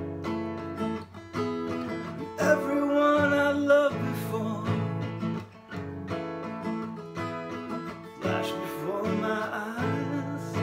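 Acoustic guitar strummed with a pick in a steady rhythm, with a man singing over it in two phrases: one a little after two seconds in and another near the end.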